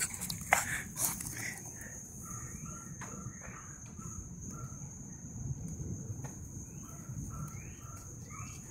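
Small dog in a backyard making short high-pitched sounds that repeat throughout, some rising in pitch, with a few sharp knocks in the first second as it runs past close by. A steady high-pitched hum runs underneath.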